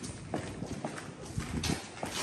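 Footsteps going down hard stairs, a sharp step about twice a second.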